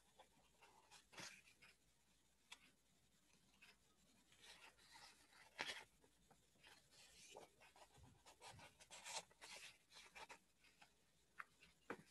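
Near silence: room tone with faint, scattered small clicks and rustles, as of hands moving at a desk.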